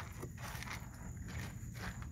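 A hand rummaging through dry kibble in a plastic tub, giving a faint rattle of pellets shifting against each other and the container, with scattered small clicks.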